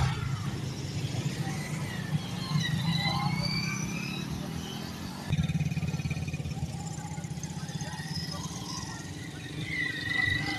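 Several small motorcycles running and riding past close by, their engines a steady low drone. About five seconds in, the engine sound jumps louder as a bike passes right by.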